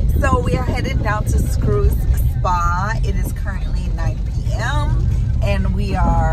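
A woman's voice, lively and high, over the steady low rumble of a car's engine and road noise heard inside the cabin.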